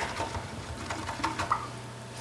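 A few faint clicks and taps of a paintbrush being picked up and handled, over a steady low hum.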